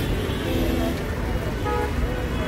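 Heavy city road traffic: a steady rumble of engines and tyres, with a short vehicle horn toot near the end and voices mixed in.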